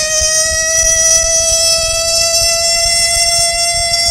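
A siren holding a steady high tone with many overtones. It reaches this pitch after winding up just before.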